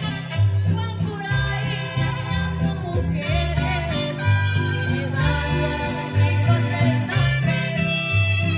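A woman singing a Latin American song into a microphone over backing music with a steady, stepping bass line.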